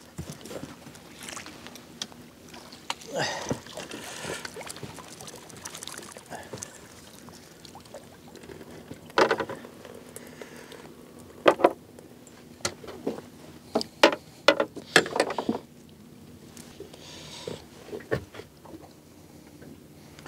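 Water sloshing and splashing as a landing net is dipped into calm sea and lifted out with a squid in it, with scattered sharp knocks and clicks in the middle of the scoop.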